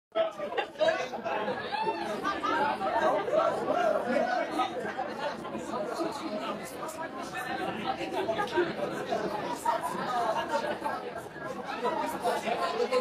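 Many people talking at once in a room: the indistinct chatter of a small audience and band.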